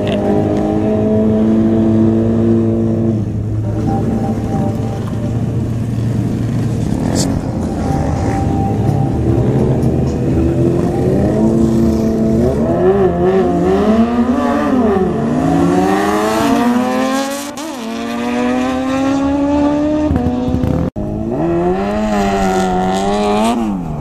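Kawasaki Ninja sport-bike engines at a drag-strip start: a steady engine note at first, then a hard run with the pitch rising in several sweeps, each broken by a drop as a gear changes. After a break near the end comes one more rise and fall in engine pitch.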